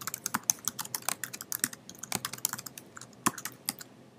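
Typing on a computer keyboard: a quick, even run of key clicks that stops shortly before the end.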